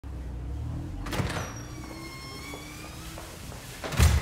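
Doors and a vehicle: a low rumble of an idling car, a door knock about a second in, then a long squeak of a door hinge for about a second and a half, and a heavy thud at the very end.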